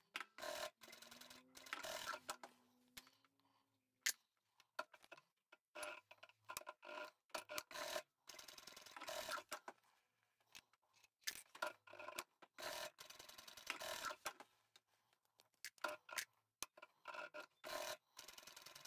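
Quiet, intermittent rustling and small clicks of fabric and plastic sewing clips being handled at a sewing machine, with a faint hum in the first few seconds.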